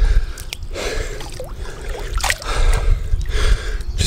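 Pool water sloshing and lapping against a camera held at the surface while a swimmer treads water, with a steady low rumble and a few sharp drips.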